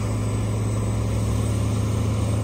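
Heavy mulch-processing machine running steadily, its engine giving an even low hum as the red stacking conveyor drops black mulch onto the pile.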